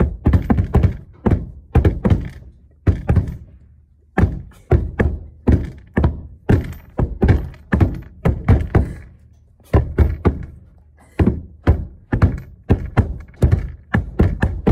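A fast, uneven series of loud thunks from a wooden bed frame and its plywood boards being struck, in rhythmic clusters with short pauses near four seconds and ten seconds in.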